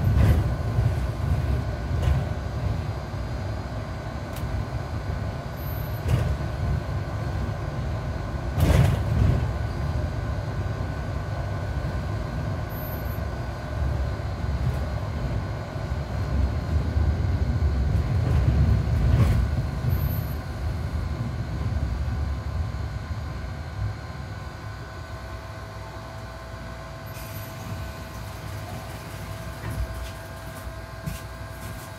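Mercedes-Benz Citaro C2 G articulated bus under way, heard from inside: a steady low rumble of engine and road noise, with two jolts from bumps about nine and nineteen seconds in. Near the end the rumble falls away as the bus slows, and a steady whine comes in.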